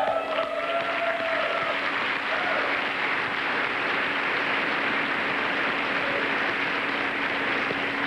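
A banquet-hall audience applauding steadily, with a few voices cheering in the first couple of seconds. The applause thanks the race crew in the balcony and eases off slightly near the end.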